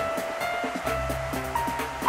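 Background music: a melody of held notes over a steady beat, with a low bass coming in about a second in.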